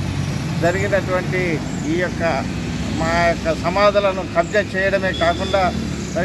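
A man speaking continuously to reporters, with short pauses, over a steady low background hum.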